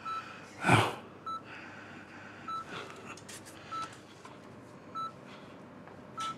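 Bedside patient monitor beeping: one short, single-pitched beep about every 1.2 seconds, the steady pulse beep of a heart monitor. Shortly before a second in, a brief, louder breathy sound from one of the people stands out over the beeps.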